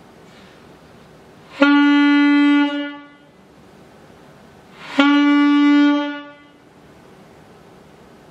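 Selmer alto saxophone playing the same single note twice, each starting cleanly, held about a second and tapering off. The note is blown with breath pressure matched to the airflow (the teacher's "100 of 100"), giving a tone he judges okay.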